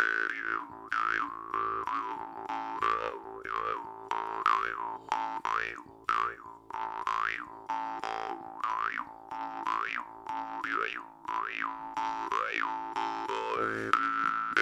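A jaw harp played in a slow, steady groove: a continuous twanging drone, plucked in an even rhythm. An overtone melody swoops up and back down about once a second as the player's mouth shape changes.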